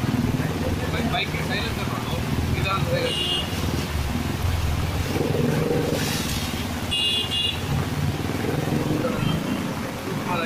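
Cars and motorbikes running through floodwater on a road, their engines making a steady low rumble, with two short horn toots, about three and about seven seconds in.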